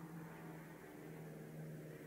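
Low steady hum with faint hiss, background room noise from a fan or mains hum. There are no other events.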